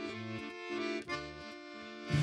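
Accordion playing soft, sustained chords, changing chord about halfway through.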